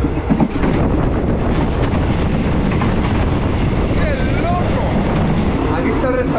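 Older passenger train running, heard loud through an open carriage door: a continuous rattle and rumble of wheels on track with scattered knocks, so loud that people have to shout to hear each other.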